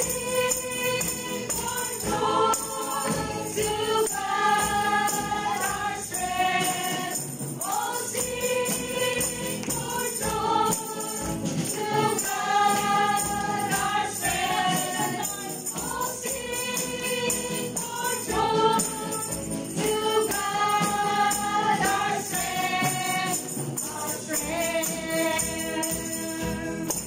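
A Christian worship song: women's voices sing repeated phrases over musical accompaniment, with tambourine jingles shaken throughout.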